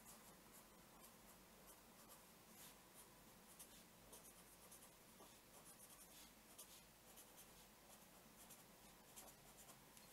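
Faint scratching of a felt-tip pen writing on paper, in short irregular strokes.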